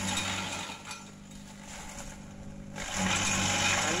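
Kelani Komposta KK100 chopper running with a steady hum as gliricidia branches are fed into it. It gives loud bursts of shredding noise at the start and again from about three seconds in, with a quieter stretch between.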